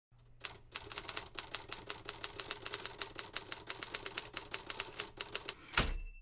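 Typewriter keys clacking in a fast, even run of about seven strikes a second, ending with one louder, heavier strike.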